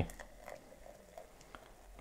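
Carbonated cola poured from a plastic bottle into a glass, with faint pouring and fizzing as the foam rises.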